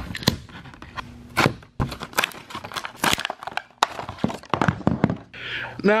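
Hard plastic blister packaging of a plug-in digital outlet timer being handled, giving irregular clicks, crackles and knocks.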